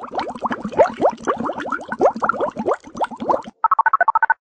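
A rapid, uneven run of short rising blips, bubbly like a cartoon sound effect, then a fast two-note electronic beeping near the end.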